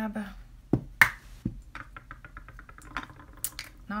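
Small hard plastic makeup containers being handled and rummaged through: a few sharp clicks and knocks in the first second and a half, then a run of faint rapid ticks and one more click near the end. A word trails off at the start.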